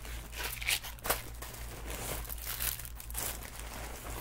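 A crinkly bag being rummaged through by hand: continuous irregular crinkling and rustling, with one louder crackle about a second in.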